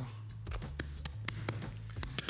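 Light taps and knocks of hands and a rolling pin working bread dough on a wooden counter: about half a dozen short, sharp clicks, over a faint low background hum.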